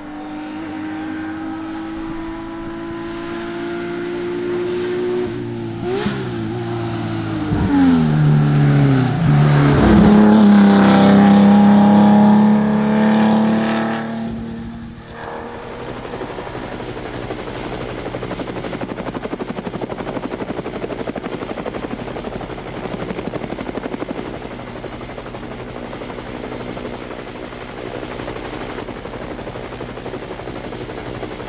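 Porsche 911 2.0 S rally car's air-cooled flat-six engine rising in revs as it approaches, dropping in pitch several times around seven to ten seconds in, loudest as it goes past and fading out about fifteen seconds in. After that, a steady buzzing hum with a thin high whine: a camera drone's propellers.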